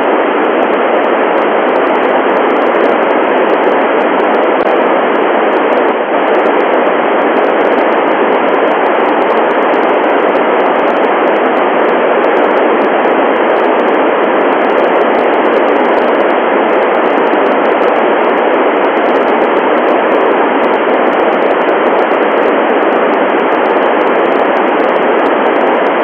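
Steady FM receiver hiss from an Icom IC-9700 tuned to a Tevel satellite's FM transponder downlink near 436.4 MHz. The squelch is open and no station is coming through the transponder, so only noise is heard.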